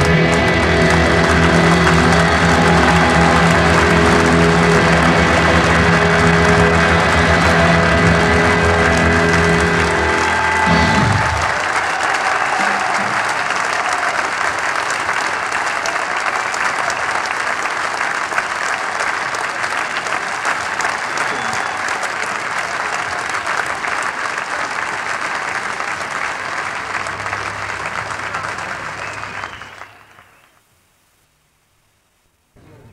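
A rock band's closing chord held and ringing out for about eleven seconds, then an audience applauding steadily until the recording cuts off at the very end.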